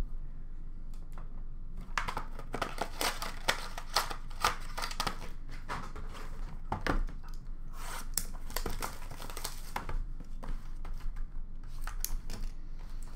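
Crinkling and tearing of trading-card box packaging being handled and opened: a dense run of sharp crackles and rips starting about two seconds in.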